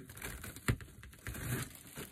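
Quiet rustling and crinkling of deco mesh being pulled by hand through a wire wreath frame, with a sharp click about two-thirds of a second in.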